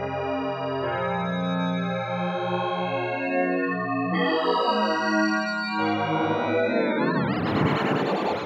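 Synth pad chords played through Ableton Live's Chorus effect at 100% wet, with a slow, gentle pitch drift from the LFO. About seven seconds in the LFO rate is turned up and the chords break into a fast, wobbling vibrato.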